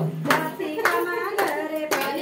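A group of women clapping hands in a steady rhythm, about two claps a second, to accompany their own singing of a Teej dance song.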